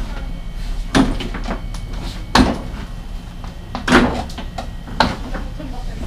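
About four sharp knocks and thumps from a stationary sport motorcycle and its rider's body as he shifts his weight from one side of the seat to the other.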